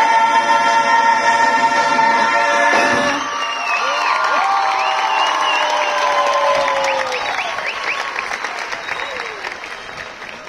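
A murga choir holds a sustained chord that cuts off about three seconds in. Cheering, whoops and applause follow and slowly die down toward the end.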